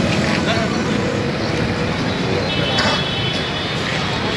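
Indistinct talking of a crowd standing in a street, over a steady wash of road traffic noise.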